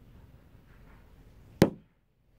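A single sharp knock close to the microphone, about one and a half seconds in, over faint room noise.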